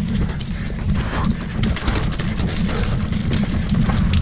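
Specialized Kenevo Expert e-mountain bike rattling over rocks on a downhill trail, with irregular clicks and knocks from the Fox 40 fork, frame and drivetrain. A heavy wind rumble on the microphone runs underneath.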